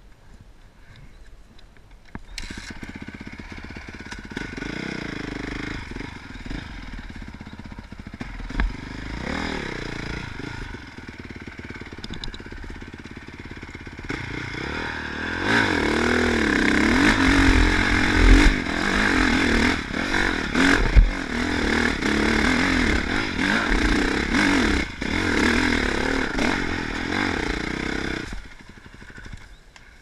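Honda CRF450R four-stroke dirt bike engine revving hard under load up a hill climb, its pitch rising and falling with the throttle, louder in the second half. It cuts out near the end as the bike fails to make the climb and goes down.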